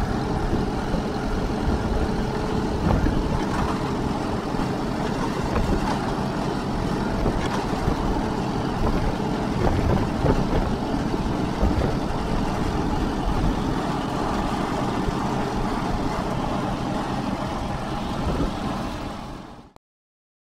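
Allis-Chalmers 170 tractor engine running steadily, heard close by. Near the end it fades and stops.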